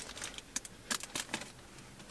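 Faint light rustling with a few scattered small clicks as a plastic-wrapped snack cupcake is handled.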